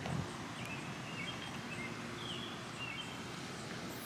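Quiet outdoor ambience with faint, scattered bird chirps.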